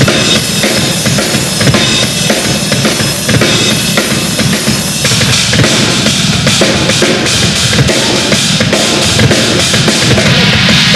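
Tama double-bass drum kit played live, fast and dense, with bass drum and snare. About halfway through, the cymbal strokes come through sharper and more distinct.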